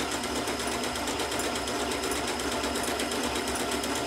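Janome sewing machine stitching steadily at a reduced speed, sewing a feather stitch to join two fabric edges.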